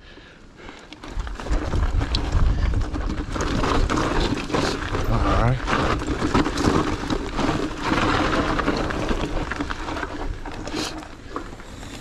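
Mountain bike rolling fast down a rough dirt and rock trail: tyre noise and the bike rattling and clicking over bumps, with wind rumbling on the camera microphone, building about a second in.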